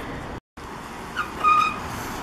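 Outdoor street ambience: a steady rush of wind on the microphone and traffic noise, broken by a brief drop to silence about half a second in, with a short high tone about a second and a half in.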